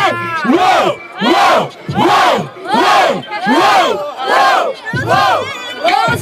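Crowd chanting in rhythm at a rap battle: about eight loud shouted calls, one every second or less, each rising and falling in pitch.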